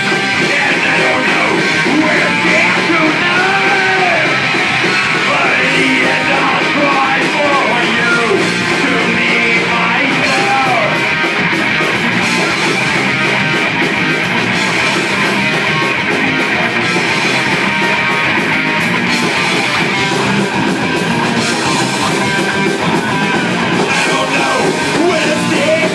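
Live rock band playing loudly: electric guitars and a drum kit, with a singer's voice over them.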